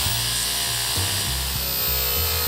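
A power tool running steadily with an even, high-pitched noise, over background music with a low pulsing beat.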